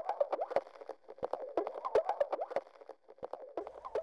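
Sheets of paper being rolled and taped into a cone: irregular crinkling and crackling, broken by many sharp clicks.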